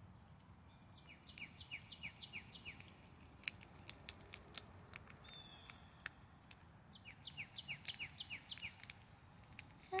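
Eastern chipmunk cracking and chewing peanut shells: sharp, irregular clicks and crunches, loudest a few seconds in. A songbird sings two short phrases of quick, repeated falling notes, about a second in and again about seven seconds in.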